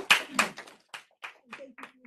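Small audience clapping. The applause thins to a few scattered claps and dies out near the end.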